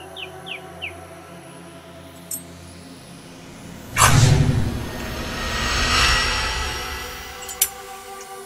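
Film sound effect for a magical fire blast: a sudden loud whoosh with a low boom about four seconds in, swelling again and then fading over the next few seconds, over a steady music bed.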